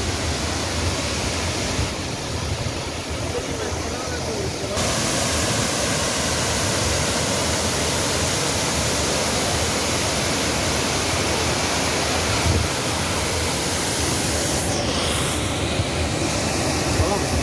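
Cheeyappara waterfall's tiered cascade rushing steadily down a rock face, heard close up. The water noise becomes louder and brighter about five seconds in.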